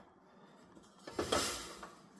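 Near silence, then about a second in a brief handling sound that fades away: the top cover of a Vesta self-powered indoor space heater being taken hold of and lifted off.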